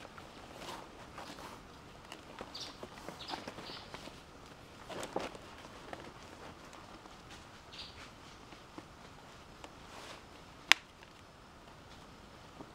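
Banana leaves rustling and crackling as they are gathered and folded by hand, in scattered short bursts. One sharp click, the loudest sound, comes near the end.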